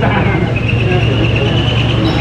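Steady low rumble of road traffic and engines, with faint background voices. A thin high tone sounds faintly from about half a second in, rising slightly in pitch.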